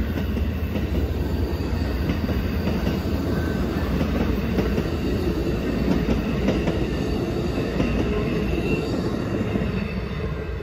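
Amtrak Superliner bi-level passenger cars rolling past close by: a steady rumble of steel wheels on rail with occasional clicks. The sound begins to fade as the last car goes by at the end.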